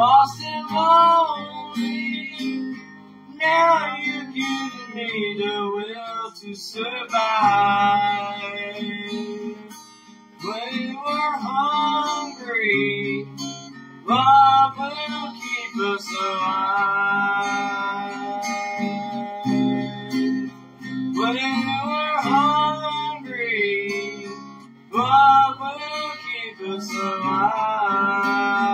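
An acoustic guitar being strummed while a voice sings a song over it. The sung lines come in phrases a few seconds long with short breaks between them.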